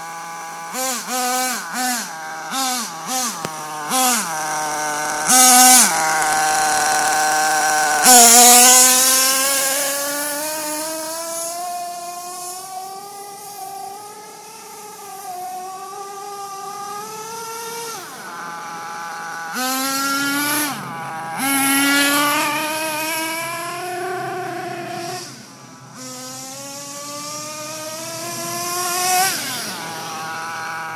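Radio-controlled off-road buggy's motor revving up and down as it drives, with a run of short throttle blips in the first few seconds, then longer rising and falling runs.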